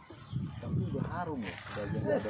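Indistinct men's voices, with rising and falling pitch, starting about a third of a second in.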